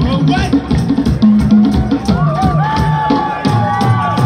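Live band music with a steady drum rhythm and a bass line. About halfway through, voices sing long held, wavering notes over it.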